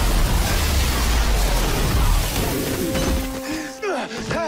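A TV sound-effect blast: a loud, dense rush of noise with a deep rumble under it, mixed with background music. It fades away about three seconds in.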